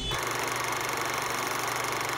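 Old film-projector sound effect: a steady, rapid, even mechanical clatter that starts just after the speech stops.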